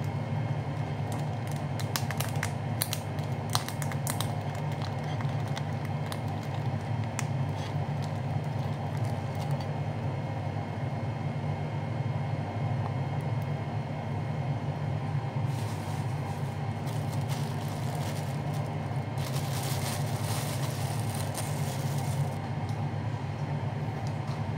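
Steady low machine hum from a fan-driven kitchen appliance running throughout, with small clicks of food and hands on a plate early on and crinkling of plastic wrap in the second half.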